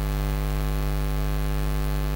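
Loud, steady electrical mains hum in the recording: a low drone with a stack of evenly spaced overtones and nothing else.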